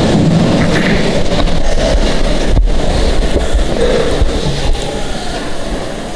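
A congregation sitting down in church pews: a broad rustle and shuffle of many people settling, with a single knock about two and a half seconds in.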